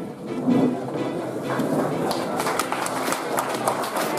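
Audience clapping in a hall, the dense patter of many hands starting about a second and a half in.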